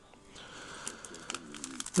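Foil wrapper of a baseball card pack crinkling and crackling as it is picked up and opened, starting about a third of a second in.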